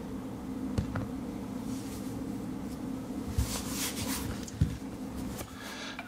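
Faint handling sounds of a smartphone being picked up off a desk: a few light knocks and a brief rustle about halfway through, over a steady low hum.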